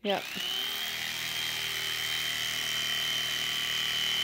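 Electric carving knife switched on: its motor whines up in pitch within a fraction of a second, then runs steadily with a high whine as the blades saw through a foam mattress.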